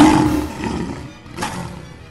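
A loud roar sound effect voicing the enraged Beast, strongest at the start and fading away, with a second, fainter noisy burst about a second and a half in.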